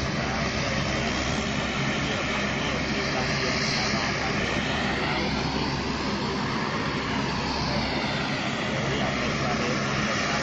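Aircraft engines running steadily: a loud, even drone with a low hum beneath it.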